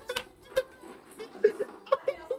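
A few short, scattered chuckles and soft voice sounds, with a couple of brief clicks, at the tail of a bout of laughter.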